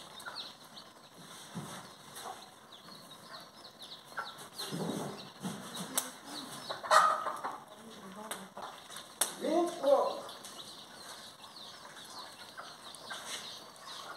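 Chicks peeping in quick, short, falling chirps with chickens clucking now and then, and a few sharp knocks of a wooden spoon against the pot being stirred.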